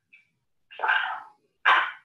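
Two loud animal calls: a longer one about a second in and a shorter one near the end.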